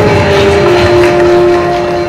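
Audience applauding, with sustained ringing tones held steadily over the clapping.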